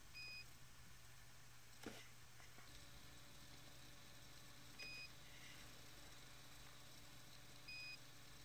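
Three short electronic beeps, each a single steady high tone, coming a few seconds apart over near silence, with a faint click about two seconds in.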